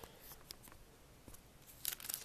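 Faint handling noise of a 45 rpm single in a clear plastic sleeve: a few soft clicks and light rustles, with a small cluster near the end.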